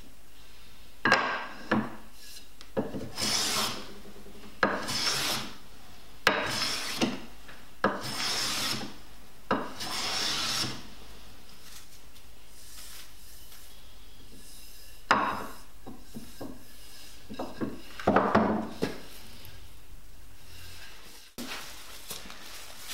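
Block plane shaving a tapered wooden handle. There are about six strokes, each with a sharp start as the blade bites, running into a swish of about a second, coming under two seconds apart. After a pause of a few seconds, a few more strokes follow.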